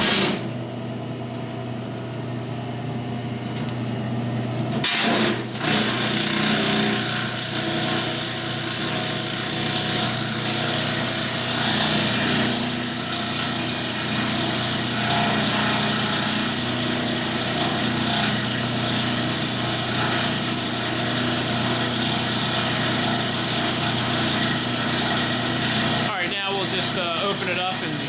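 SEM model 1012 high security disintegrator with its 10 hp motor starting up abruptly and running steadily. About five seconds in the sound grows louder and coarser as paper is fed in and shredded, then carries on steadily.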